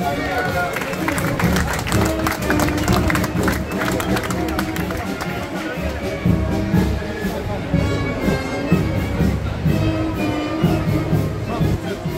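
Procession band music, a melody of held notes over a repeated low bass, with crowd chatter around it.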